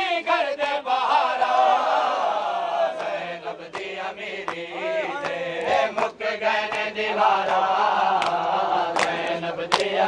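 A noha lament chanted by a group of men, their voices rising and falling. From about three seconds in, sharp slaps of hands on bare chests (matam) are heard among the voices.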